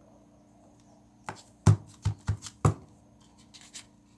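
A quick run of about five sharp knocks a little over a second in, as a plastic glue bottle and craft pieces are handled and set down on a wooden floor, followed by a few faint ticks.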